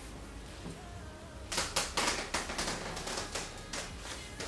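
Soft background music, joined about a second and a half in by a rapid run of sharp clicks like typing.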